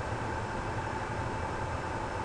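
Steady background hum and hiss of room noise, with a faint thin tone above it, unchanging throughout.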